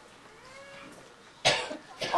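A single short, sharp cough about one and a half seconds in, after a quiet pause.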